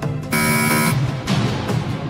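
Game-show buzzer sounding once for about half a second, a harsh, buzzy tone over steady background music. It marks a wrong answer as the correct one is revealed.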